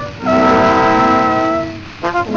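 Trombone on a 1901 recording playing a long held note: it slides up into the note just after the start, holds it for about a second and a half, then fades near the end.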